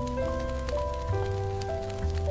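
Soft, slow jazz piano playing single melody notes over low held bass notes, with a faint scatter of small ticks in the background ambience.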